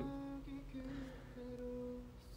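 A man humming softly through closed lips, a few held notes that step slightly in pitch.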